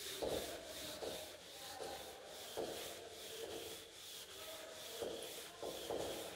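A cloth duster wiping chalk off a blackboard in a series of separate rubbing strokes.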